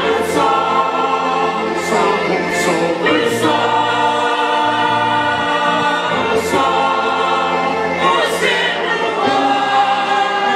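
A women's choir singing a church song together, long held notes broken by short pauses between phrases.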